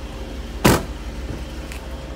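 Car door of a Jeep SRT8 shut with one sharp, loud bang about two-thirds of a second in, over a steady low rumble.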